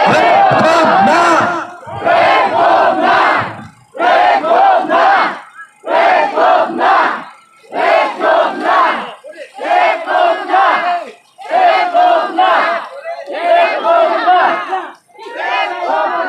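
A crowd of protesters chanting a short slogan in unison, shouted about every two seconds with brief pauses between the shouts, about eight times.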